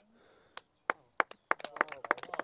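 A run of sharp, irregular clicks and taps, a few at first and then coming quicker in the second half.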